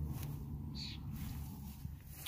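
Faint low outdoor rumble, with one brief high chirp a little before the middle.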